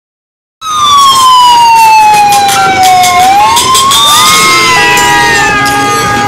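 A siren wailing: it starts suddenly about half a second in, its pitch falls slowly for about two and a half seconds, then rises again, with other gliding and steady tones joining after about four seconds.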